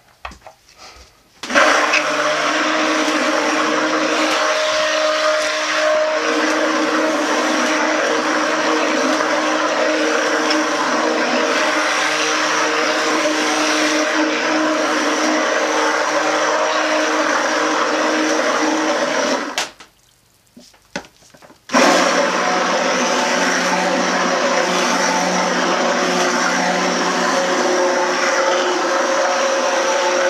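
Electric stick blender running in a crock pot of soap batter (oils mixed with lye solution), blending it to thick trace for hot-process soap. It runs steadily, cuts out for about two seconds two-thirds of the way through, then starts again at a slightly different pitch as it is switched between high and low speed.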